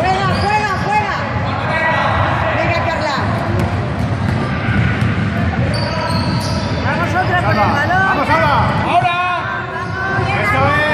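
Basketball game play in a sports hall: the ball bouncing on the court floor amid players and spectators calling and shouting, the calls coming thicker in the last few seconds.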